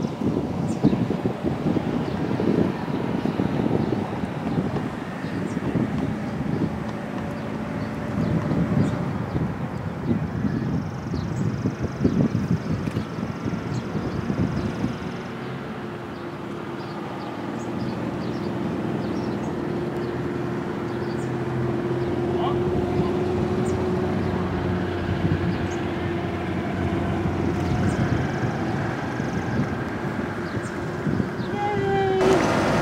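Outdoor background noise dominated by wind buffeting the microphone, an irregular low rumble that settles about halfway through into a steadier low hum, with faint voices.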